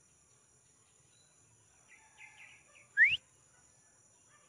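Faint short bird chirps, then one loud, short whistle rising quickly in pitch about three seconds in.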